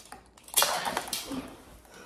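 Metal kitchen tongs clattering and scraping against live blue crabs in a plastic tray: a flurry of sharp clicks and rattles that starts about half a second in and dies down after about a second.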